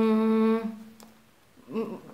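A woman's drawn-out hesitation sound 'yyy', held on one steady pitch for under a second while she searches for a word. After a short silence, the first sound of her next word comes near the end.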